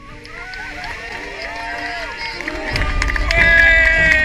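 Jet-boat passengers shouting and cheering, with a low rumble of wind and churning water growing from about three seconds in and a long high-pitched scream over it near the end.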